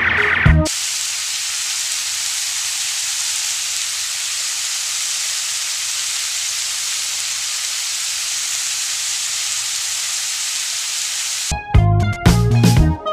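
Adobong sitaw, yardlong beans in a wide pan, sizzling with a steady, even hiss as it cooks. Background music plays briefly at the start and cuts back in near the end.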